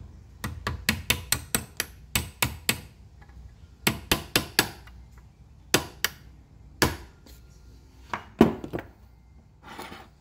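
A small hammer tapping a pin punch to drive a pin into the hub of a vending machine vend motor's plastic gear: sharp metallic taps with a short ring, in quick runs of two to seven with short pauses between.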